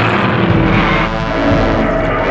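A loud rushing noise effect, with film-score music coming in over it about a second in.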